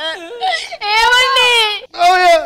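A person crying aloud in a high voice, wailing and sobbing in drawn-out cries. The longest cry lasts about a second in the second half.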